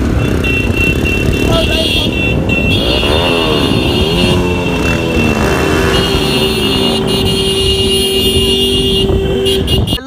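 Motorcycle engines on a group ride, revs rising and falling as the bikes ride along, with wind noise on the microphone. A steady tone holds through the second half and cuts off near the end.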